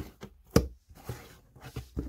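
Storage boxes being handled and moved, a plastic tub among them: a few light knocks and clicks, the sharpest about half a second in.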